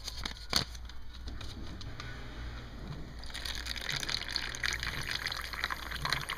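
Kitchen sink faucet turned on, running water pouring into a paper instant-oatmeal packet; the steady water noise starts a little over three seconds in, after a couple of short clicks near the start.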